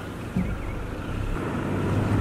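Car driving slowly, its low engine and road rumble heard from inside the cabin, growing steadily louder.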